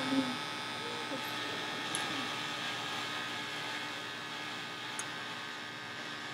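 Handheld electric beard trimmer running with a steady buzz as it is pressed against a man's cheek, cutting through a thick beard.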